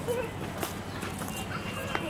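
Footsteps on stone paving: sharp taps about every half second, over a faint murmur of voices.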